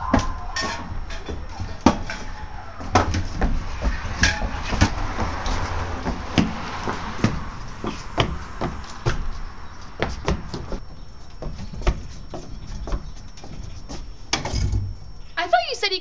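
A manual wheelchair rolling and bumping over wooden porch boards, with a string of irregular knocks and clatters over a low rumble.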